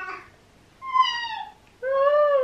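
Two short, meow-like calls: the first higher and falling in pitch, the second lower and arched, with a pause between.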